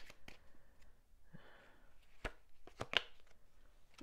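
Tarot cards being handled: a soft, brief shuffling rustle, then a few sharp snaps and taps in the last two seconds as a clarifier card is pulled from the deck and laid down.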